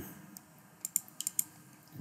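Light clicking at a computer desk: a few short, sharp keyboard and mouse clicks, one early and a quick cluster of five about a second in.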